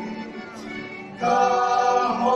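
Voices singing a slow communion hymn in sustained notes, softer at first, with a louder phrase coming in a little past halfway.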